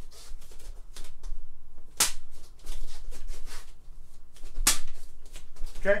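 Bare-fist jabs snapping into a hand-held sheet of paper: sharp, crisp paper pops, the two loudest about two seconds in and just before five seconds, with lighter snaps and paper rustle between.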